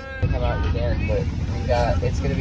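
Steady low road and engine rumble inside a moving cargo van, starting abruptly a moment in, with short fragments of voices over it.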